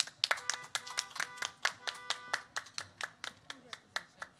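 A person clapping their hands steadily at about six claps a second. For about two seconds in the first half, a sustained pitched tone of several notes together sounds under the claps.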